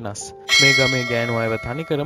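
A bell struck once about half a second in, ringing with several steady high tones that fade out over about a second, under a voice speaking.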